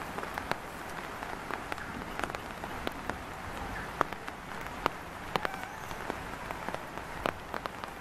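Scattered, irregular sharp ticks and crackles, a few a second, over a steady outdoor hiss.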